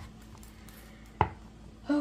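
A single sharp knock about a second in, as the cured resin trinket tray comes free of its silicone mold and lands on the countertop; otherwise quiet handling.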